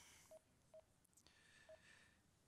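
Three short, faint beeps at one middle pitch from a portable GPS navigator's touchscreen as its buttons are tapped: two about half a second apart, then a third near the end.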